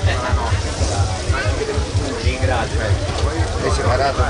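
Voices talking over background music with a pulsing bass beat.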